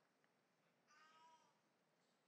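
Near silence: room tone, with one very faint, brief pitched sound about a second in.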